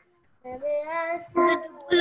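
A child's high voice in drawn-out, sing-song notes, starting about half a second in after a brief silence.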